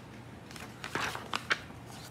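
Paper page of a hardcover picture book being turned by hand: a few short, crisp rustles and flaps of the page, clustered around the middle.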